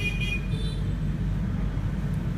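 Steady low background rumble, with a brief high-pitched tone near the start.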